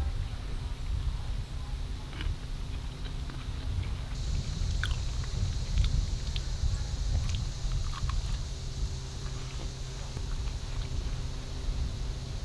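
A person chewing a bite of pan-fried fish patty, with faint scattered clicks of chewing over a low wind rumble on the microphone. A steady high hiss comes in about four seconds in.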